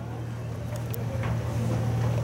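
Steady low hum with a few faint ticks.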